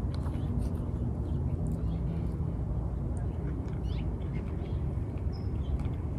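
Someone quietly chewing food close to a microphone, over a steady low background rumble.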